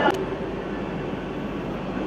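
Steady background noise, with a brief click just after the start.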